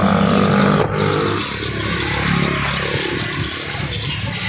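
A car door shut with a single thud about a second in, over the steady hum of a vehicle engine running.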